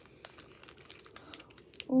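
Faint crinkling and rustling of mail packaging handled by hand, in a few short scattered bursts.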